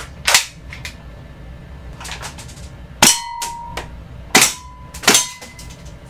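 A gun fired repeatedly at targets, about six sharp shots spread over a few seconds. Several hits are followed by a short metallic ringing, a steel target being struck.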